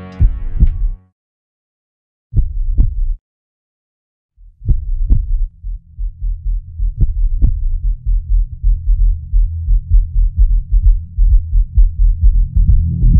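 Film soundtrack sound effect of a heartbeat: low double thumps, lub-dub, with silent gaps between them. From about four and a half seconds a low hum comes in under the beats, which quicken to several a second by the end.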